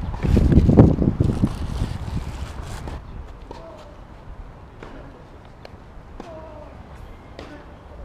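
Camera being handled with wind on the microphone for the first few seconds, then distant tennis balls being struck on nearby clay courts: scattered sharp pops about a second apart, with faint far-off voices.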